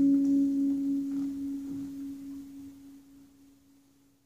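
Electric guitar's last note of the piece ringing out alone and dying away over about three seconds into silence.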